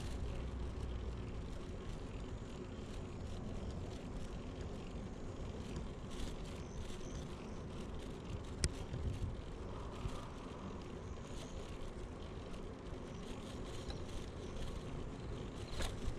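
A YouBike public bicycle being ridden along a paved path: a steady low rumble of wind and rolling noise, with small rattles and one sharp click about halfway through.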